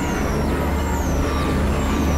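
Experimental electronic synthesizer noise music. A deep, rumbling low drone comes in at the start and holds for about two seconds under a dense noisy texture, with high falling sweeps repeating just under a second apart.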